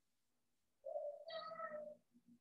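A single pitched call held at a nearly steady, slightly falling pitch for about a second, starting just under a second in.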